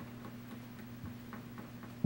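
Quiet studio room tone: a steady low electrical hum with a few faint, scattered ticks.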